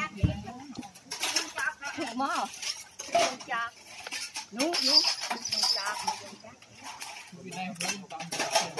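Light clinks and knocks of a stick against the metal pan of silk cocoons as silk is being reeled by hand, with scattered talk of bystanders between them.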